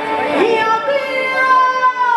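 Taiwanese opera (gezixi) singing: a high voice slides up, then holds a long note from about a second in, with a slight waver, over the troupe's musical accompaniment.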